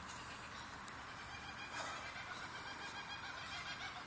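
Faint, steady outdoor background noise, with a brief breathy rush about two seconds in.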